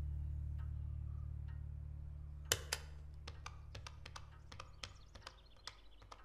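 A low musical drone fades away while, from about halfway through, a dozen or so light, irregular clicks of keys being pressed follow one another, growing fainter.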